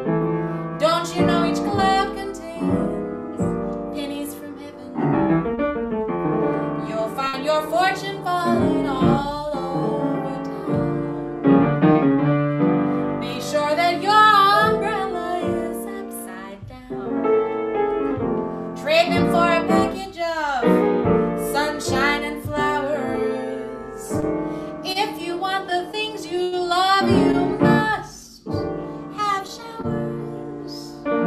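Jazz piano played in a solo performance of a song, chords and melody lines running on without a break.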